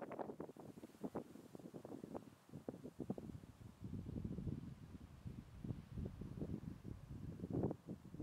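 Faint wind buffeting the microphone in uneven gusts, a low rumble with irregular bumps.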